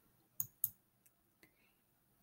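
Two short clicks of a computer's pointer button, about a quarter second apart, then a much fainter click about a second later, as the play icon is clicked.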